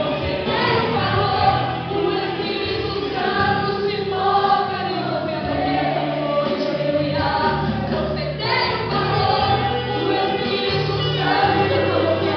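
Live gospel worship song: singing voices over instrumental accompaniment, with low notes held in steady blocks beneath the melody.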